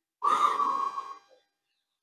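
A woman's breathy exhale, a sigh about a second long, while stretching.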